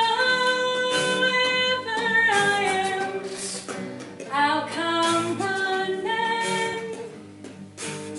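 A small mixed group of singers holding sustained vocal harmonies over a strummed acoustic guitar, in two long phrases that ease off toward the end.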